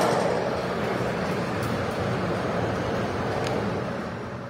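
BISCHOFF electric overhead crane running, a steady mechanical rumble that eases off slightly near the end.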